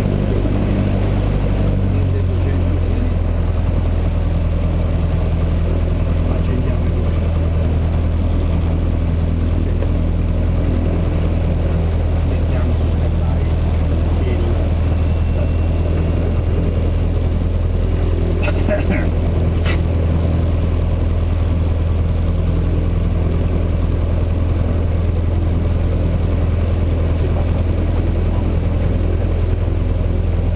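Single-engine light aircraft's piston engine idling on the ground, heard from inside the cabin: a steady low drone whose pitch shifts slightly about two seconds in.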